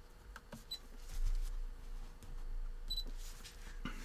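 A few faint, short clicks and taps over a low, steady hum, with two brief faint high pings about a second in and near the end.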